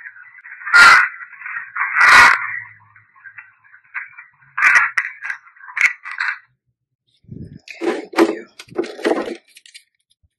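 Playback through a Panasonic IC voice recorder's small built-in speaker: a tinny, narrow hiss with two loud crackles about one and two seconds in and a few shorter ones around five seconds, stopping at about six seconds. Near the end come a few duller knocks and rustles of the recorder being handled.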